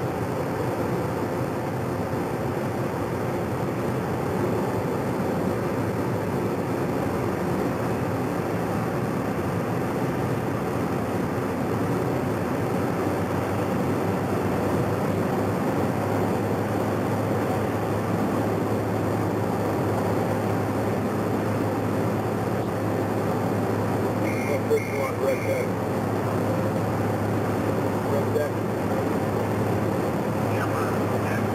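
Steady machine noise from a helicopter running on a ship's flight deck, even in level with many fixed tones throughout. Three short high beeps sound in quick succession a little past the middle.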